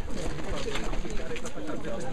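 Indistinct voices of people talking in the background, without clear words.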